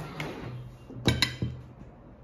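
A ceramic bowl clinks against the table as it is set down beside another dish. There is a sharp cluster of clinks about a second in, followed by a smaller knock.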